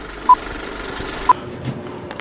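Old-film countdown leader sound effect: short, high beeps once a second over a steady projector-like hiss. The hiss cuts off suddenly just after the second beep.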